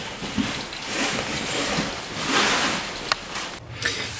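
Rustling handling noise, with a single sharp click about three seconds in.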